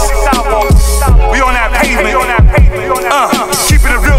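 Hip-hop beat with heavy bass kicks under a busy, sliding melodic sample.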